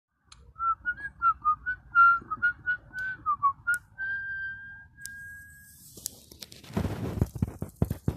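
A person whistling a short, quick tune of wavering notes that ends on one long held note. Then comes a burst of rustling and handling noise with clicks near the end.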